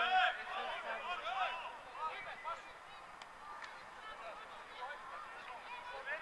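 A flock of geese honking: many short, rising-and-falling calls, loudest in the first second and a half, then sparser and fainter.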